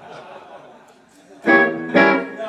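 Electric guitar played through an amplifier: a loud strummed chord rings out suddenly about a second and a half in and starts to fade, with the next chord struck at the very end.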